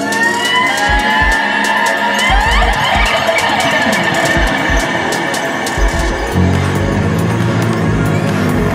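Electric upright bass played with a bow over a backing track with a drum beat: sliding high notes in the first half, then a low held note from about six seconds in.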